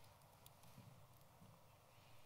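Near silence with a few faint laptop keyboard keystrokes, scattered clicks as a word is typed.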